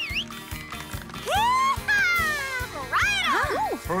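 Cheerful cartoon background music with a run of high, sliding cries on top, each rising and falling in pitch, beginning about a second in.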